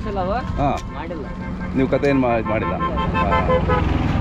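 Deccani sheep bleating in wavering calls. In the second half, a vehicle horn sounds in a string of short toots over a running engine.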